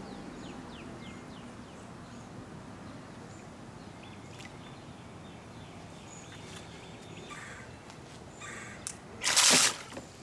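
Faint bird chirps over a quiet outdoor hush. Near the end comes a loud, half-second burst of splashing and churning as the submerged FPV racing quad's propellers spin up underwater.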